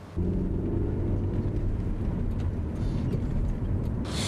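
A motor vehicle engine running steadily close by in street traffic, a low rumble with a steady hum in it that starts abruptly just after the start.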